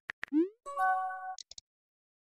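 Chat-app message sound effect: a few quick clicks, a short rising bloop, then a held electronic chord. It is the same short cue that repeats with each new message bubble.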